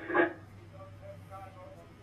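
The tail of a man's voice over a radio link cuts off in the first moment. A faint, steady low hum and quiet background noise are left.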